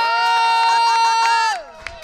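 A woman's voice holding one long high note into a microphone for about a second and a half, then sliding down in pitch and fading out.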